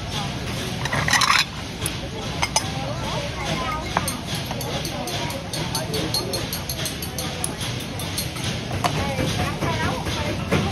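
Busy street food market ambience: background chatter of voices, with clinks of bowls and utensils and short snips of kitchen scissors cutting meat. A short loud noise about a second in stands out above the rest.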